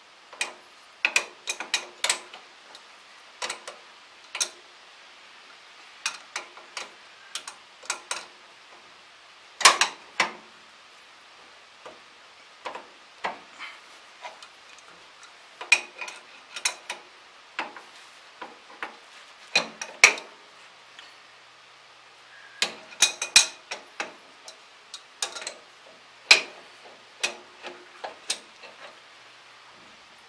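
Hand wrench working the bolts and jam nuts on a steel tractor implement bracket: irregular metallic clicks and clinks, some in quick runs of several clicks.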